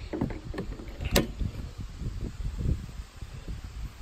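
J1772 charging plug being handled and pushed back into a Toyota RAV4 EV's charge port: soft knocks and rustling with a sharp click a little over a second in. The plug is being reseated to restart charging, which keeps stopping with a system malfunction message.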